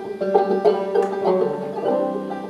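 Banjo playing a run of plucked notes as song accompaniment, with no singing over it.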